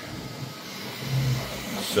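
Bambu Lab P1S 3D printer running a print: a steady low hiss of its fans and motion, with a short low hum about a second in.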